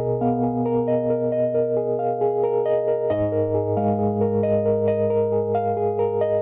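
Wurlitzer 200A electric piano playing held low chords under a repeating pattern of higher notes, the harmony changing about halfway through.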